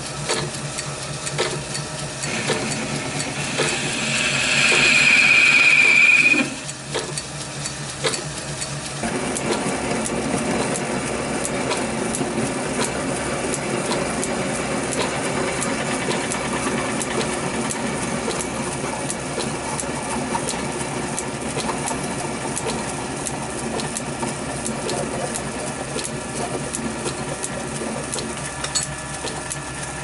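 Small metal-turning lathe running while cutting a steel bar. A few seconds in, the cutting tool gives a loud, high, steady squeal for about four seconds, from a steel so hard that it work-hardens under the cut. After that comes a steadier cutting sound with a light regular ticking.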